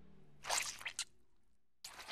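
Short wet squelching sound effects for a slug-like cartoon creature sliding along: a squish about half a second in, two quick ones around the one-second mark, and another starting near the end.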